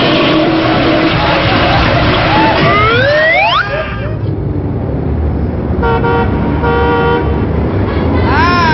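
Toilet-flush sound effect: a loud rushing swirl with rising whistling glides near its end, cutting off suddenly about three and a half seconds in. Then a quieter traffic background with two short car-horn toots about a second apart.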